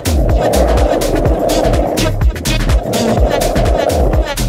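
Skateboard wheels rolling over rough asphalt, a steady roar that swells and dips with the riding. Background music with a steady beat and heavy bass plays over it.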